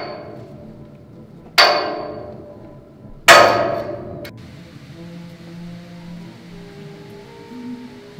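Three loud, sudden clangs about a second and a half apart, each ringing out for about a second, the last the loudest; soft held music notes follow near the end.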